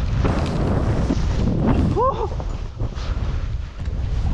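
Wind noise buffeting a body-worn camera's microphone as a skier descends through deep powder, with the skis rushing through the snow. A brief rising vocal exclamation comes about halfway through.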